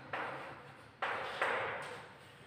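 Chalk scratching on a blackboard in three short strokes, each starting sharply and fading away.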